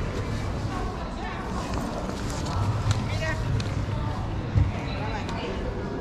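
Clothes rustling as hands rummage through a pile of garments in a bin, over a steady murmur of other shoppers' voices, with a couple of dull low thumps, one at the start and one about four and a half seconds in.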